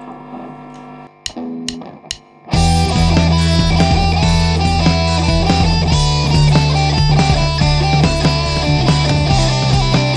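Three sharp clicks, then about two and a half seconds in a full band starts: an electric guitar solo over a bass line and drums generated by a DigiTech Trio+ band-creator pedal.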